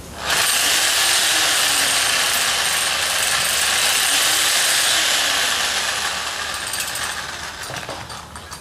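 Reciprocating saw running with an auger drill bit tied to its blade clamp with twine, a makeshift drill. It starts abruptly, runs loud and steady for about six seconds, then dies away near the end.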